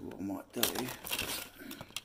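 Plastic bags crinkling and rustling as sunglasses are handled and pulled from a box, in quick irregular bursts, with a brief wordless murmur of voice.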